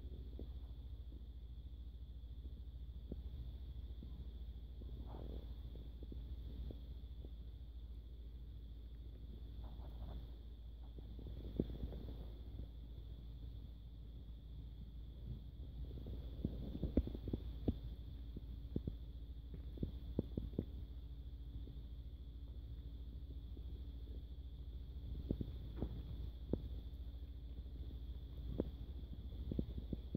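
Kittens eating wet cat food from a plastic bowl: faint scattered clicks and smacks of chewing, thickest in the second half, over a steady low rumble and faint hum.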